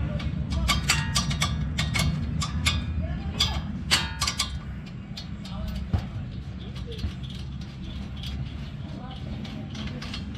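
Irregular metallic clicks and clinks as a Toyota Innova's front brake caliper and its bolts are worked loose by hand, densest in the first half, over a steady low rumble.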